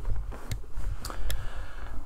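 Low room rumble with two short, sharp clicks about a second apart; no music or speech.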